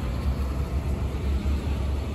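Low, unsteady rumble of wind buffeting the microphone, with no distinct mechanical sound.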